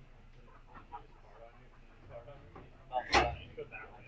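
Faint background talk, then one short, loud burst of a person's voice about three seconds in.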